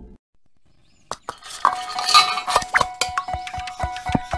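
Animated logo bumper soundtrack starting after a short silent gap about a second in: rapid metallic clinks and taps over a steady held tone.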